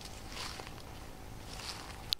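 Soft rustling of steps through weeds and brush, two swishes about half a second in and near the end, over a faint outdoor background hiss.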